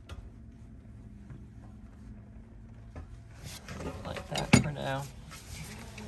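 Metal clinks from a steel pipe wrench with a cheater pipe working a steam radiator's valve fitting, with a sharp metal clank a little past halfway.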